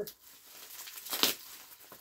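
Plastic bubble wrap crinkling and rustling as it is handled and pulled open, with a louder crinkle about a second in.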